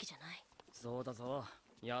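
Speech only: a man's voice speaking a short line of the anime's dialogue, with another line starting near the end.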